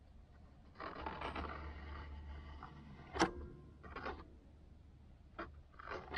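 Palette knife scraping wet oil paint off the canvas, a scratchy rasp lasting about two seconds, followed by a few sharp clicks as the knife is lifted and set back.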